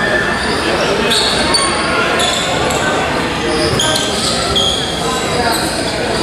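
Basketball players' sneakers squeaking on a hardwood court, many short high squeaks scattered through, over the steady noise of a gym full of voices.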